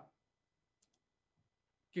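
Near silence during a pause in speech, with two faint, brief clicks just under a second in.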